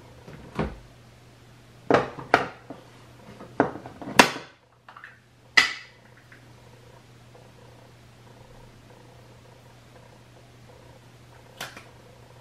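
Small makeup containers and lids being handled, giving a run of sharp clicks and taps in the first six seconds and one more near the end, over a steady low hum.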